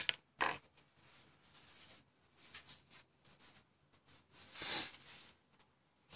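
Two sharp knocks of small objects set down on a wooden board. Faint handling and rustling noises follow, with a soft swish near the end.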